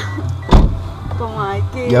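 Car engine idling as a low steady hum heard inside the cabin, with one sharp thump about half a second in.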